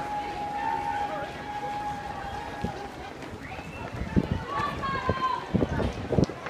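Footfalls of a crowd of runners passing on a road, with bystanders' voices calling out in long held cheers; the low thuds get busier in the second half.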